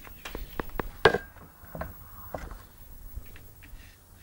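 Handling noise from camera equipment being moved and touched: a string of sharp clicks and knocks, the loudest about a second in.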